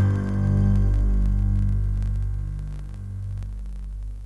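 Low, steady hum-like drone of background music, a few deep sustained notes that fade slowly and die away near the end.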